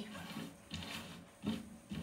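Playing cards being swept together and gathered up by hand on a tabletop, sliding and rustling, with a couple of sharper clacks of cards striking each other.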